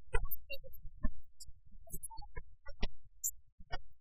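Sparse plucked pipa notes, about one a second, over a low steady hum: the instrumental accompaniment between sung phrases of Suzhou tanci.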